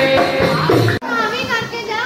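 Dholak hand drum playing a dance rhythm under singing, cut off abruptly about halfway through; then high voices talking and singing.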